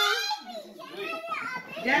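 Speech only: adults and a toddler's voice in a room, dropping quieter in the middle before talking resumes near the end.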